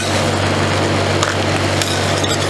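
Steel spatula scraping frozen watermelon ice cream flakes across the cold steel plate of a roll ice cream machine: a steady, dense scrape. Underneath it runs a steady low hum from the machine.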